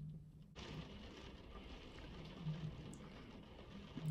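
Rain falling, a faint steady patter that comes in about half a second in.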